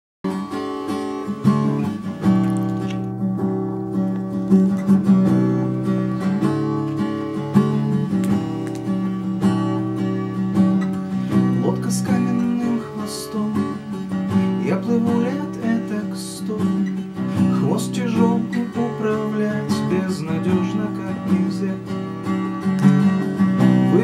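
Hohner acoustic guitar played as a chord accompaniment, a steady instrumental introduction with regular strokes across the strings.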